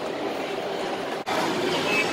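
Steady hubbub of a busy shopping mall, a mix of crowd noise and air handling. It breaks off for an instant a little over a second in and comes back slightly louder.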